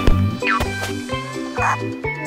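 Bouncy cartoon background music with a steady repeating bass beat. A thump comes right at the start, and short high cartoon sound effects sit over the music, one sliding about half a second in.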